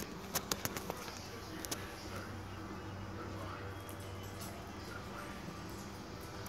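Dog claws clicking on a hardwood floor as the dog walks: about five quick clicks in the first second, then two more a little later, over a steady low hum.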